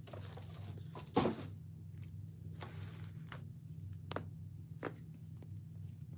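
A steady low hum with a few soft clicks and knocks over it, the loudest about a second in.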